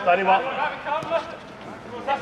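Men's voices calling out for about the first second, then only faint background.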